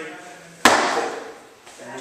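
A single sharp impact a little over half a second in, loud and sudden, with a short ring-out afterwards.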